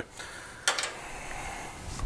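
A single sharp click about two-thirds of a second in, followed by a soft rustling hiss, as a part is picked up and handled at the engine.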